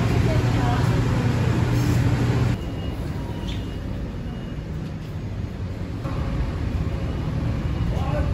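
Shop ambience from short clips cut together: indistinct background voices over a low hum, with the background changing abruptly about two and a half seconds in and again about six seconds in.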